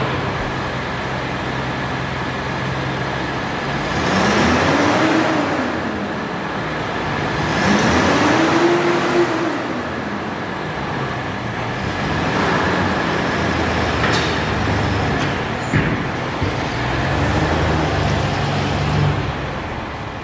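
Toyota FJ60 Land Cruiser's inline-six petrol engine idling, revved twice, each rev rising and falling in pitch, then pulling away near the end.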